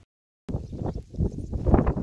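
A brief dead silence, then wind buffeting a phone's microphone in irregular gusts, with knocks from the phone being handled.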